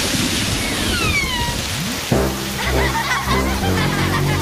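Cartoon rain-shower sound effect: a steady hiss of rain, with a few falling whistle tones about a second in. About halfway through, background music with sustained chords comes in.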